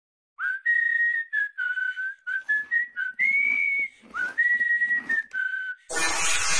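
A whistled tune: one clear tone stepping through about a dozen short and held notes, some sliding up into pitch, with brief gaps between phrases.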